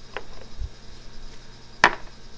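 A single sharp knock near the end, after a fainter click and a short low thump earlier on.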